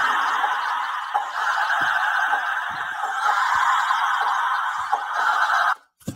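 Audio from a YouTube video playing on the phone: a steady, hiss-like band of noise with no clear tune or words, cut off suddenly just before the end when the app is left.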